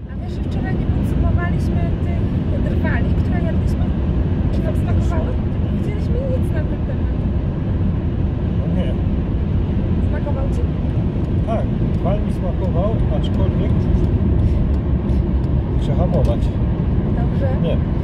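Steady road and engine noise of a moving car, heard from inside the cabin, with faint conversation over it.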